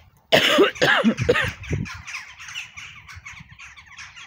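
A person coughing hard, about four coughs in quick succession, with birds chattering faintly afterwards.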